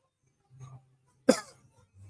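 A single short cough a little over a second in.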